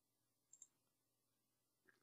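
Near silence: faint room tone with a couple of short faint clicks, about half a second in and again near the end.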